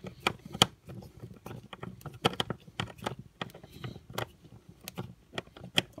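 Small Phillips screwdriver turning out the little screws in the plastic housing of a Mercedes outside-temperature display: irregular light clicks and scrapes of the tip in the screw heads and against the case, with handling of the unit.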